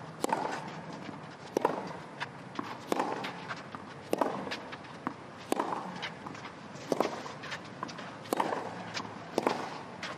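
Tennis ball struck back and forth with racquets in a long baseline rally on a clay court: about eight sharp hits, roughly one every 1.3 seconds. Between shots, players' footsteps scuff on the clay.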